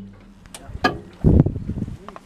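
Two short, sharp knocks, then a brief loud low rumble of wind buffeting the microphone about a second and a quarter in.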